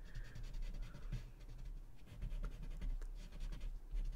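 Paper tortillon (blending stump) rubbing graphite into a small paper drawing tile: faint, soft scratchy strokes in short irregular passes.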